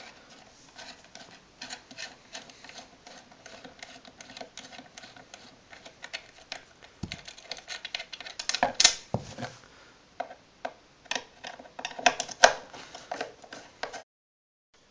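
Crosshead screwdriver turning machine screws out of an amplifier cabinet's back panel: a run of small, irregular clicks and ticks of the bit working in the screw heads, with a few louder clicks about 9 and 12 seconds in.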